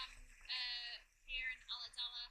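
A woman's voice, quiet and high-pitched, in four or five short sounds separated by brief pauses.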